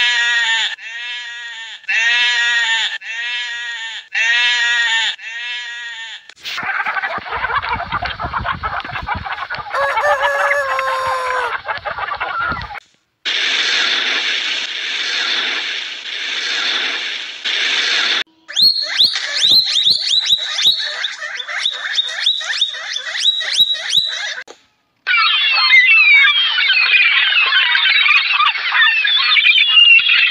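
Sheep bleating, about five calls in the first six seconds. Then come several short clips of hissing noise with clicks, split by brief gaps, ending in a dense chorus of gulls calling over one another.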